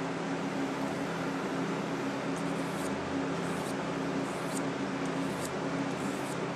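Box fan running with a steady hum. From about halfway through come five or six faint, brief scrapes as a small pocketknife blade is drawn lightly across a ceramic sharpener.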